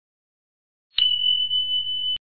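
Electronic sound effect: one steady high-pitched beep-like tone, starting about a second in and lasting a little over a second, ending with a click.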